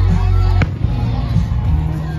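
A single firework shell bursting with a sharp bang a little over half a second in, over loud music with heavy bass.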